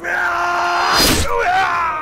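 Two men yelling in a fight: one held scream for about a second, then a lower, strained yell from the other that fades out.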